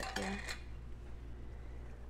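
A single light clink of a metal spoon on the cookware about half a second in, then quiet kitchen room tone with a low steady hum.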